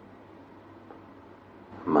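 Faint, steady room hiss in a pause of a slow guided-meditation talk, then a man's calm speaking voice starting near the end.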